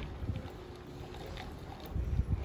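Low, steady rumble of handling noise on a handheld camera microphone while walking, over the faint background noise of a shop, with a few soft clicks.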